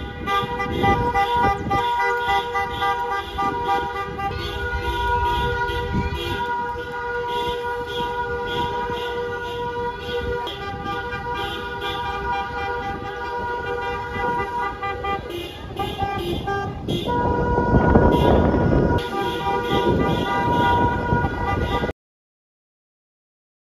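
Car horns held and honking in a celebratory motorcade, over a rumble of vehicles. The horns run steadily and get louder about three-quarters of the way through.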